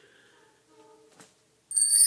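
Chimes ringing: faint sustained tones at first, then bright, high bell-like tones come in loudly near the end as the song's accompaniment begins.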